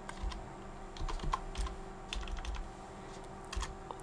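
Computer keyboard keys pressed one at a time, about eight faint, irregularly spaced clicks, over a low steady hum.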